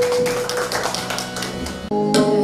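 Live instrumental accompaniment: quick, irregular tabla strokes over a held instrumental note that fades out about halfway through. The sound breaks off suddenly just before the end.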